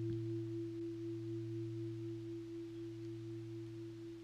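A steady low sustained tone with a second, higher tone above it, slowly fading: a meditation drone of the kind used as background for guided meditation.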